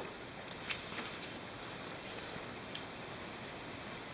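Steady faint hiss, with a light tick just under a second in.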